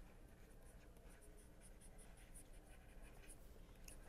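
Faint ticking and scratching of a stylus writing on a pen tablet, over near-silent room tone.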